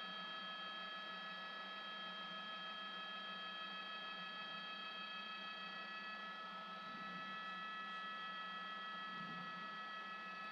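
Steady helicopter cabin noise picked up through a news helicopter's open intercom microphone: several unchanging high whining tones over a low hum and hiss.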